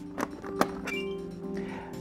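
Two sharp plastic clicks of an RJ45 plug being seated in a patch panel, then, about a second in, a short high chirp from the Fluke Networks DSX-5000 cable analyzer, the signal that the main and remote units have connected to each other through the link. Background music plays throughout.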